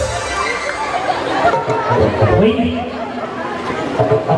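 Audience chatter: many voices talking over one another in a crowd, with no single clear speaker.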